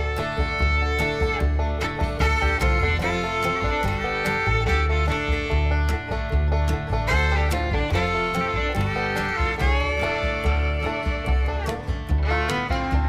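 Background music: an instrumental tune with a sustained string melody over a steady bass beat.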